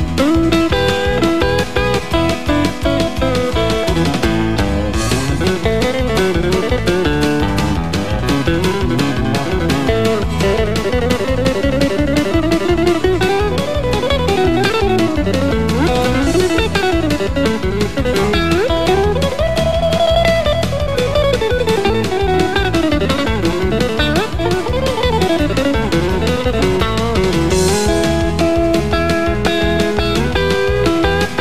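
Telecaster-style electric guitar playing fast country lead: rapid picked runs that climb and fall in pitch, demonstrating left- and right-hand coordination at speed.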